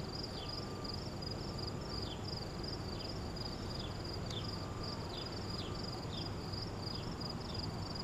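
Insects chirping steadily in a high, regular pulsing trill, with short falling chirps at irregular intervals over a low steady background hum.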